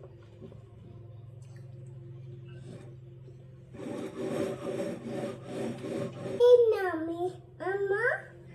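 Dry spiral pasta rustling and rattling in a glass bowl as a toddler's hands stir through it, starting about four seconds in after a low steady hum. Near the end a small child's voice calls out twice, gliding in pitch.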